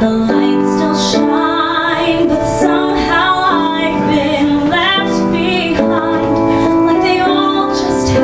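A woman singing solo into a microphone, her held notes wavering with vibrato, over piano accompaniment from a Roland digital keyboard.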